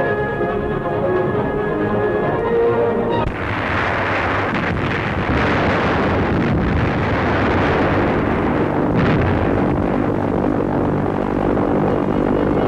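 Orchestral film music for about the first three seconds, then it gives way abruptly to a dense, continuous din of battle sound effects: bomb explosions and gunfire noise, with a few sharper blasts standing out.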